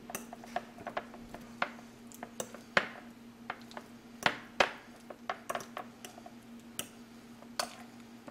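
A metal fork clinking and scraping against a small glass bowl as it whips soft cream cheese filling: irregular light clinks with a few sharper ones, over a faint steady hum.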